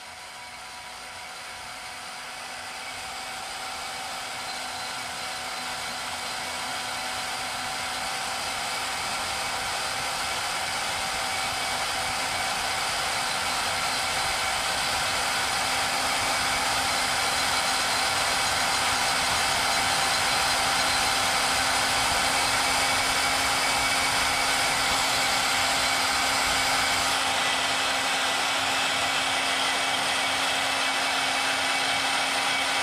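Portable band saw running steadily with a motor whine while cutting small pieces of clear plastic. It grows gradually louder over the first fifteen seconds or so, then holds steady.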